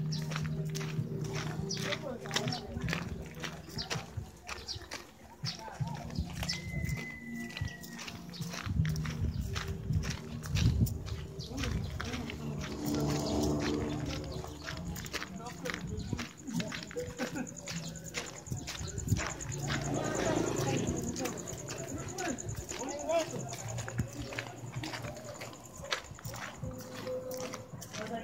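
Footsteps on a gravel road as several people walk along it, with people talking.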